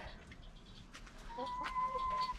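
A hen gives one long, even-pitched call starting a little over a second in, over faint scattered clicks.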